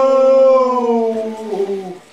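A man's voice holding one long, howl-like note that glides down in pitch over the last second and stops at the end.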